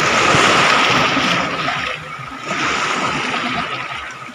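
Small waves washing up onto a sandy beach: a surge, a lull about two seconds in, then a second surge.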